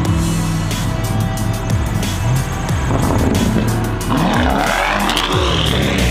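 Background music with a steady bass line, over which a Lamborghini Urus's engine revs in rising and falling sweeps from about three seconds in, loudest a little past the middle as the SUV drives off.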